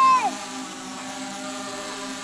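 Quadcopter drone hovering overhead, its propellers giving a steady, unchanging hum of several tones. A voice trails off just at the start.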